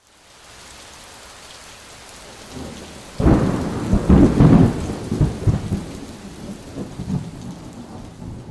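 Steady rain hiss fading in, then a loud roll of thunder breaking in about three seconds in, rumbling and slowly dying away.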